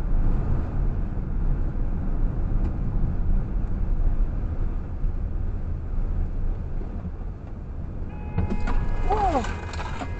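Steady low road and engine rumble heard from inside a moving car cabin as it slows for an intersection. About eight seconds in, a car horn sounds with a steady multi-tone blare for over a second, with a short vocal exclamation over it.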